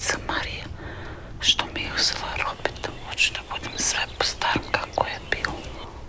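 A young woman whispering in breathy, unvoiced phrases over a faint low steady rumble.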